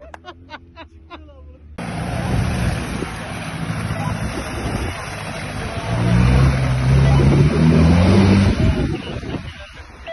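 Off-road SUV engine running and revving as it drives through a muddy puddle, with a steady rush of noise over it; the pitch rises twice between about six and eight and a half seconds. The sound begins abruptly about two seconds in, after a few faint clicks.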